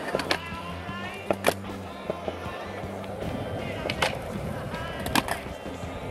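Skateboard on concrete, with about four sharp clacks of the board hitting the ground, over background music with a steady bass line.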